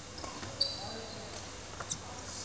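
Court shoes squeaking on a wooden sports-hall floor: one short high squeak about half a second in, then a couple of sharp clicks near the end.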